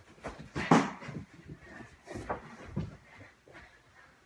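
A few scattered thumps and knocks from children playing dodgeball in a room, the loudest about a second in.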